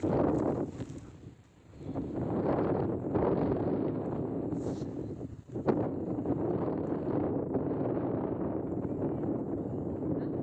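Wind buffeting the phone's microphone in uneven gusts, easing briefly about a second and a half in, with a single sharp click about five and a half seconds in.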